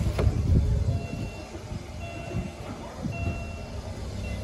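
Uneven low rumble of vehicles and outdoor background noise, with a few faint short high beeps about a second apart.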